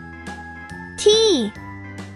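Cheerful children's background music with a steady beat. About a second in, a child's voice briefly calls out a letter, most likely "T", on a falling pitch.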